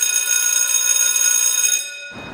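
A held electronic tone of several high pitches sounding together, steady and alarm-like, that cuts off shortly before the end.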